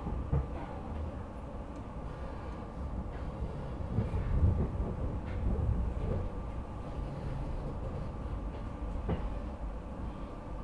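SEPTA regional rail train heard from inside the passenger car: a steady low rumble of wheels on the rails, swelling louder about halfway through, with a few short knocks.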